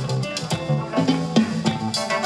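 Live rock band vamping over the festival PA, heard from the crowd: drum kit strikes over bass guitar and electric guitar.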